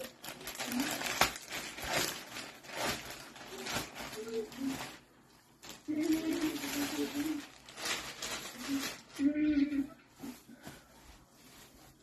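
Plastic mailer bag crinkling and rustling in a series of sharp, irregular rustles as it is opened and a pillow is pulled out of it, with a couple of quieter pauses.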